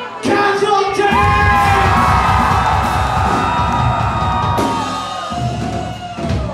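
Live punk band playing loud: a long held note rings over drums and bass for about four seconds, then the band stops.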